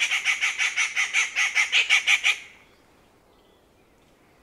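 Rufous treepie calling: a rapid series of repeated notes, about five a second, that stops about two and a half seconds in.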